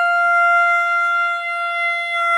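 A conch shell (shankha) blown in one long, steady blast, sounded as an auspicious signal while the elders bless the child.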